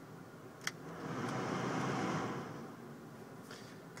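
A single click from the climate-control panel, then air rushing from the car's heater blower, swelling for about two seconds and dying away.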